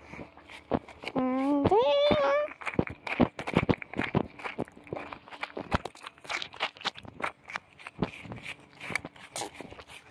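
Footsteps through grass, many short rustling steps, with a loud call about a second in that rises in pitch and lasts about a second.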